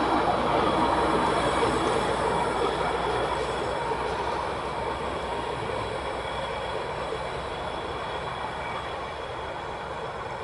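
A train that has just passed is receding down the track, its rail noise fading steadily, with faint high ringing tones from the wheels and rails.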